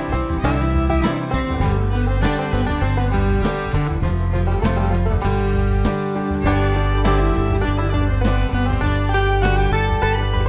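Background music: a lively, steady bluegrass-style tune on plucked string instruments.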